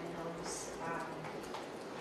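Speech: a woman talking in short, broken-up phrases with small pauses, the words too slight for the transcript to catch.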